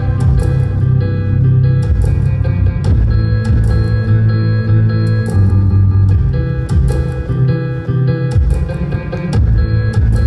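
Live band playing an instrumental passage: keyboards holding chords over sustained bass notes, with a steady percussive beat and no singing.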